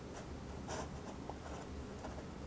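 Fountain pen nib scratching faintly across drawing paper in several short strokes as lines are inked.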